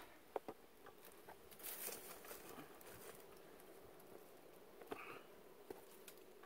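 Near silence broken by faint, scattered taps and scuffs of a person climbing a rock face by a rope, with a faint steady hum underneath.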